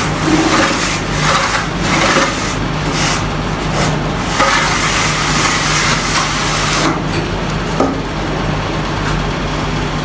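Long wooden straightedge scraped up and down over freshly applied cement plaster on a wall, a run of rasping strokes that eases off about seven seconds in. A steady low hum runs underneath.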